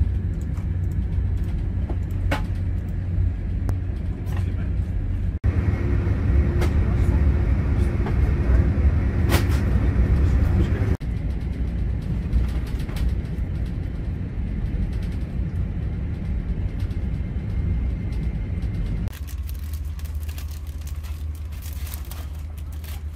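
Steady low rumble of a high-speed train running at speed, heard from inside the passenger carriage. It breaks off abruptly for an instant about five and eleven seconds in, and turns quieter near the end.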